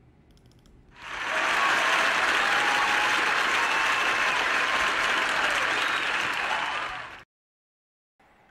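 A played-in applause sound effect: a crowd clapping, swelling in about a second in, holding steady, and cutting off abruptly near the end.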